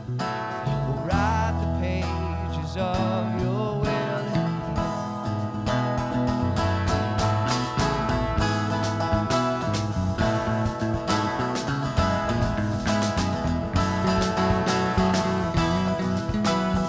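Live band music: an acoustic guitar strummed over an electric bass line, the strumming getting busier about five seconds in.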